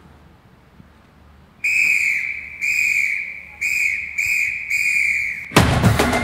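A whistle blown in five blasts at one steady pitch, the first ones longer and the later ones shorter, starting about a second and a half in. Just before the end, music with heavy drums comes in.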